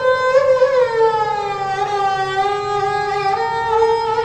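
Sarangi played with the bow in a slow solo melody: one sustained line that slides gradually downward, then steps back up near the end.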